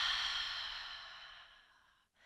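A woman's long, open-mouthed exhaled sigh, a breathy rush of air that fades away over about two seconds. It is the release of a deep breath held at the top of the inhale.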